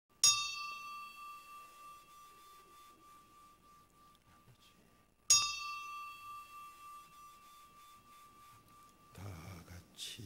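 A small bell struck twice, about five seconds apart, each strike ringing on one clear pitch and dying away slowly.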